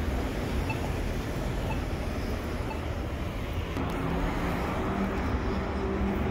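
City street traffic at an intersection: a steady low rumble of cars running and passing, with an engine hum coming in about four seconds in. Faint ticks sound about once a second in the first half.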